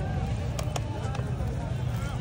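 Market background: faint voices talking over a steady low rumble, with a couple of light clicks about half a second in.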